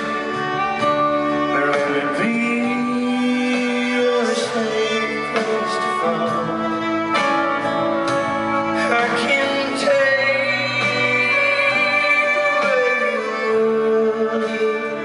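Live band playing a slow country ballad, with guitar and long, held melodic lines.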